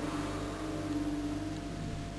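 A steady low droning tone over a constant electrical hum, the drone cutting out near the end.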